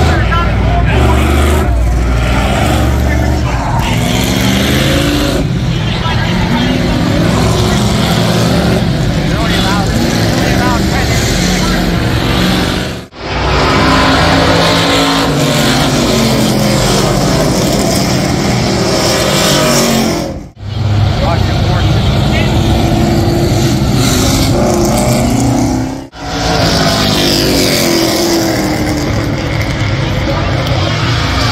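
Street stock race car engines running loud at speed, the pitch rising and falling as cars come past; the sound drops out briefly three times.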